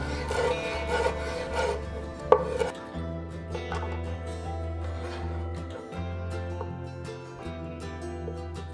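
Chef's knife chopping cilantro on a wooden cutting board, a run of quick strokes in the first few seconds with one sharper strike, over background music that plays throughout.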